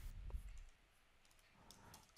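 Near silence, with a few faint clicks from working the computer's controls, about a third of a second in and again near the end.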